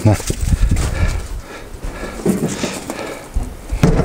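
A dog giving short, faint high-pitched whines, over knocks and shuffling on gravel.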